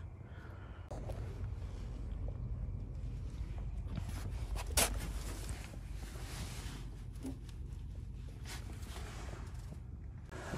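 Faint handling noise of hands and parts being moved under a car: scuffs and rustles, with one sharp click about five seconds in, over a low steady rumble.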